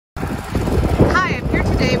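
Low, steady engine rumble from work-site machinery, with a voice starting in the second half.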